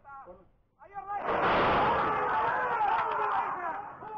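Horse-race starting gate opening with a sudden loud crash about a second in as the horses break. A loud rush of noise with a man shouting through it lasts about two and a half seconds, then fades.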